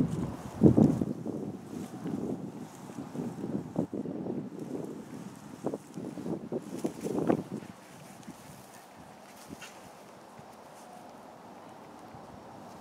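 Gusting wind buffeting the microphone: a low rumble that rises and falls in gusts, loudest about a second in, then drops to a quieter, even hiss after about eight seconds.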